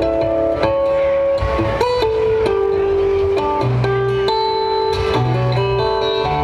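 Steel-string acoustic guitar played fingerstyle, amplified through a PA: a ringing melody over low bass notes.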